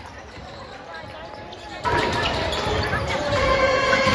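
Basketballs bouncing on a gym floor amid crowd voices during a lull, then a high school band's brass section comes in suddenly about two seconds in with loud, sustained held chords.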